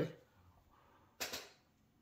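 Near silence, broken about a second in by one short, soft hissing swish lasting about a third of a second.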